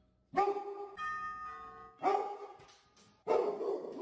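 Doorbell chimes played through a TV's speakers, ringing twice with tones that fade away. Near the end a dog barks.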